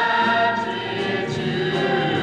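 A vocal jazz ensemble of several singers singing in harmony, holding sustained chords.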